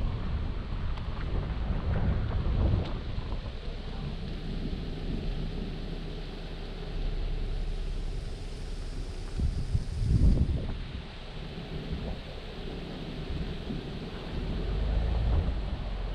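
Wind buffeting the microphone in gusts, with the strongest swell about ten seconds in and another near the end.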